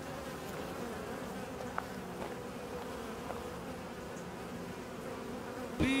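Steady buzzing of a crowd of honey bees. Near the end a voice breaks in, saying "bee" over and over.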